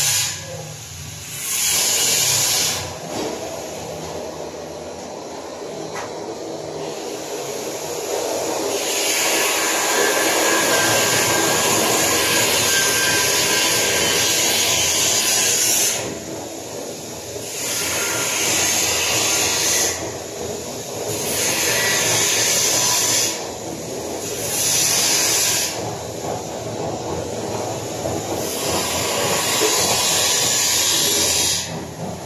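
Aerosol spray can hissing in repeated bursts, most of them short and one held for several seconds, over a steady lower background noise.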